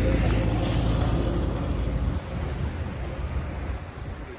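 Wind buffeting the phone's microphone: a heavy, uneven rumble that eases a little about two seconds in.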